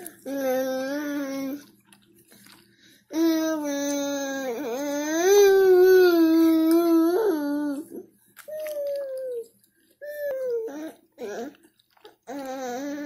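A toddler's voice in long, drawn-out sing-song notes without words: a short note, a long wavering one of about five seconds, then a few shorter ones near the end.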